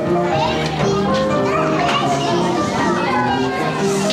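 Several children's voices calling and chattering over background music with held notes.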